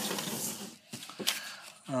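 A hand sliding and rubbing over sheets of drawing paper, a rustling scrape for about the first half-second, then a few faint ticks.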